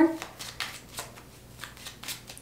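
Tarot cards being shuffled by hand, with a few soft clicks as the split deck is slid and tapped together. The tail of a woman's word is heard at the very start.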